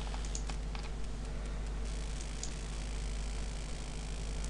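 A few scattered light clicks of computer keys and controls, most of them in the first couple of seconds, over a steady low electrical hum.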